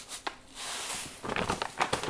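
Granulated cane sugar pouring from a plastic bag into a stainless steel Instant Pot pot, a soft hiss lasting under a second. It is followed by a run of small rustles and clicks as the plastic bag is handled and moved away.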